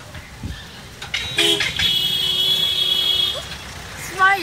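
A vehicle horn in street traffic: a short toot about a second and a half in, then a steady honk held for about a second and a half.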